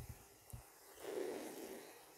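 A faint, soft slurp as a person sips latte from a glass cup, preceded by a small click.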